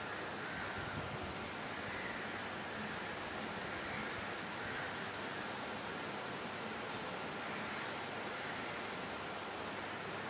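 Steady, even background hiss of room noise, with no speech.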